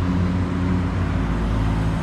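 A motor vehicle's engine running steadily, a constant low hum over a wash of noise.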